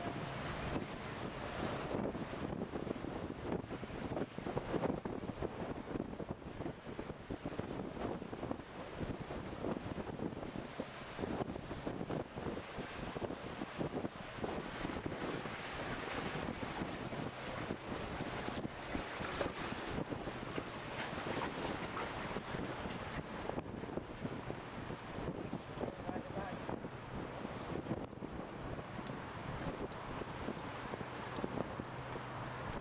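Wind buffeting the microphone on the deck of a moving tour boat, gusting unevenly, over the steady low hum of the boat's engine.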